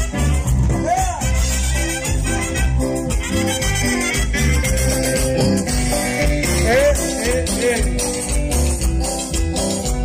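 A live tropical cumbia band playing, with a bass guitar and drum kit keeping a steady dance beat and a metal güiro scraping the rhythm. Sliding pitched notes come about a second in and again around seven seconds.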